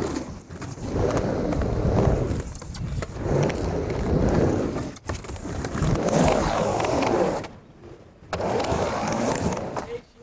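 Skateboard wheels rolling over rough street pavement, with the clack and slap of the board during flip tricks and landings.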